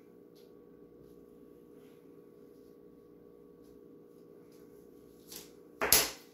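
Quiet room tone with a faint steady electrical hum, then a short, loud rustle and thump of handling near the end.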